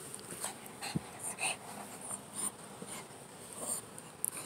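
A Shih Tzu playing with a hand right by the microphone: a string of short, irregular noisy sounds from its mouth, breath and fur against the hand, with one sharp knock about a second in.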